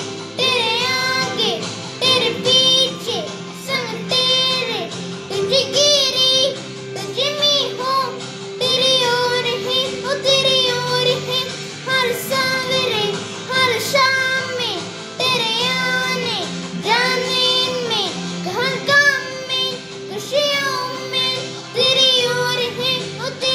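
A worship song: high voices singing a melody over a steady, sustained accompaniment.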